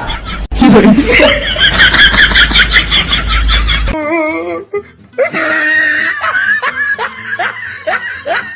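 A burst of music with a steady low rumble for the first few seconds, then laughter from about five seconds in: a run of short, repeated giggles.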